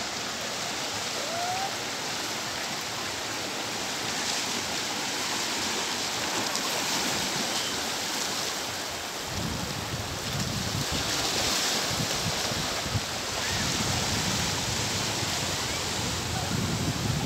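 Small sea waves washing up and draining back on a sandy beach, a steady rushing wash. About nine seconds in, a low, uneven rumble joins it.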